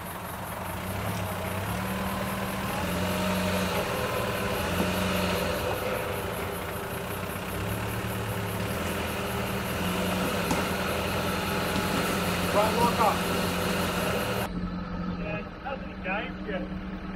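Land Rover Discovery 1's 300Tdi four-cylinder turbo-diesel engine working at low revs as the truck crawls up a rocky climb, the revs rising and falling as the driver feeds throttle over the ledges. A voice speaks briefly near the end.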